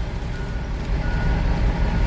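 Heavy diesel engine idling with a steady low rumble, and a single high warning beep lasting about half a second, like a reversing alarm, a little way in.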